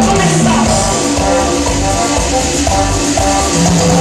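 Live Latin band music played loud through a stage sound system, with a steady strong bass and held melodic notes.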